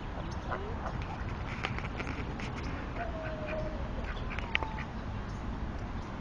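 Ducks calling now and then: scattered short calls, with one longer, slowly falling call about three seconds in. A steady low outdoor rumble runs underneath.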